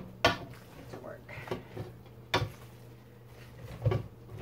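Metal fork clinking and scraping against a stainless steel bowl as raw ground-meat dog food is mashed and mixed, with three sharper knocks: just after the start, about halfway, and near the end. A steady low hum runs underneath.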